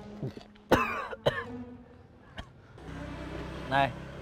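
A person coughing briefly about a second in, a loud burst followed by a shorter second one.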